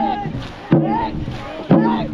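Shouted calls from a dragon boat crew, one loud burst about every second, over a steady low drone.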